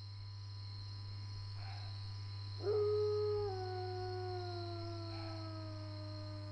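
A wolf howl: one long howl starting about three seconds in, sliding slowly down in pitch, over a steady low hum and a thin high whine.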